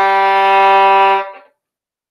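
Violin's open G string bowed as one long steady note, the opening note of a three-octave G major scale. The note stops about a second and a quarter in.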